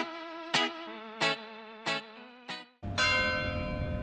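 Background music of plucked guitar-like notes, about one every two-thirds of a second. Then, near the end, a cut to a single church bell stroke ringing out and slowly fading over outdoor street and wind noise.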